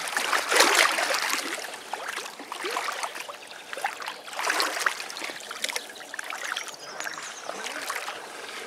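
Shallow muddy water sloshing and splashing around someone wading through it, in uneven surges, the strongest about half a second in and about four and a half seconds in.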